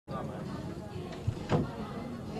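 Indistinct voices of people talking in a room, with a light knock a little past halfway and a louder thump shortly after.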